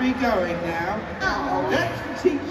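A woman's voice speaking.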